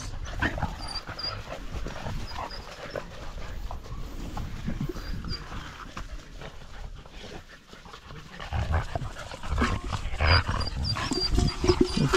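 Pit bull puppies and an adult pit bull playing and scuffling together, with short high squeaks now and then. The activity grows louder and busier in the last few seconds.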